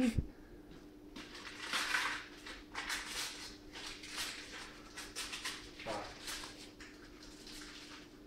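Newspaper crinkling and rustling in soft, irregular bursts as newspaper-wrapped items are handled and unwrapped, over a faint steady hum.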